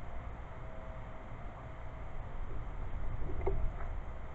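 Wind rumbling on the microphone, with a small knock about three and a half seconds in as a plastic bottle is set down on a wooden table.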